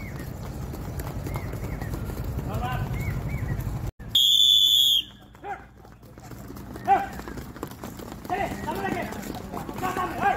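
Many feet pattering and stamping on dry dirt ground in a fast running-in-place drill, with scattered shouted calls. About four seconds in, the sound cuts off and a loud, high electronic tone plays for under a second. The stepping then resumes more quietly.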